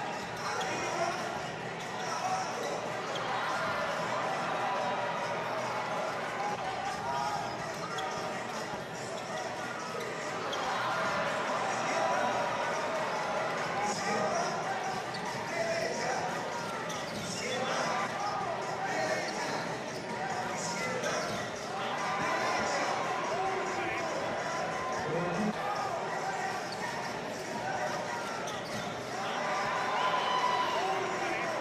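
Indoor arena ambience: a basketball bouncing on the hardwood court over a continuous murmur of crowd voices.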